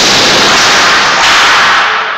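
Pneumatic debris cannon firing a projectile board at a storm shelter during impact testing: a sudden, very loud rush of released compressed air that holds for about two seconds, then fades away.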